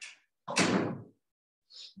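A sudden rushing, breathy whoosh of about half a second, made by a man's forceful exhale into a close microphone, followed by a faint hiss of breath near the end.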